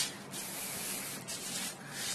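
Rubbing and rustling handling noise from a hand-held phone's microphone as the phone is swung around, in irregular scrapes over a faint steady hum.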